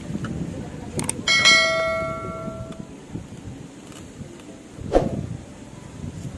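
A click followed by a bell-like chime that rings and dies away over about a second and a half: the notification sound of an on-screen subscribe-button animation. A single sharp knock near the end.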